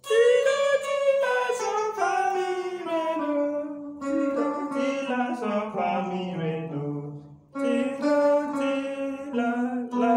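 Electric guitar played single-note melodic runs: three phrases, each stepping downward in pitch, the third starting after a brief pause about seven and a half seconds in.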